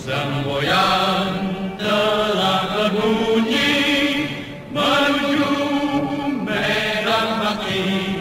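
Background song: voices singing long, held, wavering notes in a chant-like choral passage, in phrases that break off briefly about every two seconds.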